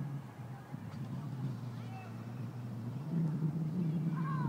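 Outdoor background: a steady low hum, with a few faint, short, high wavering calls about halfway through.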